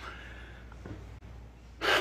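A pause in a man's speech at a lectern microphone: a faint breath drawn in over a steady low hum, with his speech starting again near the end.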